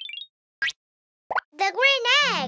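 Cartoon sound effects: a short rising chirp, then two quick rising pops in near silence, followed near the end by a baby cartoon character's voice cooing with a rising-and-falling pitch.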